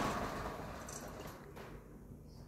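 Sentry A6 Max gate motor driving the sliding gate along its rail on its test cycle, the running noise fading steadily toward a stop.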